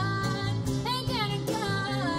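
A small live country band plays: acoustic guitar, electric bass and electric guitar. A melody line bends and wavers in pitch over held bass notes.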